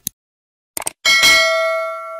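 Mouse-click sound effects: a quick double click, then another double click just under a second in. About a second in a bright bell ding follows and rings out, fading slowly.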